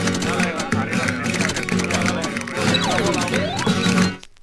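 Music from a 45 rpm vinyl record playing through a DJ mixer with the bass turned down, as in a mix between records, with a vocal line gliding up and down in pitch.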